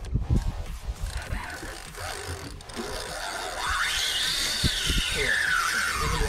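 Spinning reel's drag whining as a hooked fish pulls line off. The pitch climbs to a peak a little past the middle and then falls away as the run slows. A few low handling knocks come in the first second.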